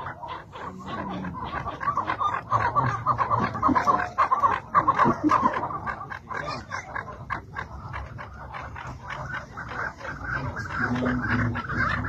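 Chukar partridges calling: a run of quick, repeated clucking notes, loudest a couple of seconds in.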